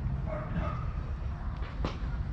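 A dog barking briefly about half a second in, over a low steady rumble, with a sharp click near the end.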